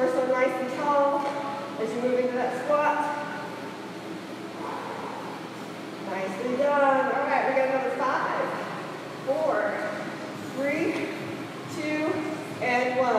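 A woman's voice talking in short phrases with pauses, the words not made out.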